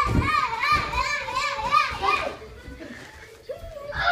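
Young children shouting and chanting with excitement, a short high-pitched call repeated rapidly for about two seconds, then quieter, with a child's voice again near the end.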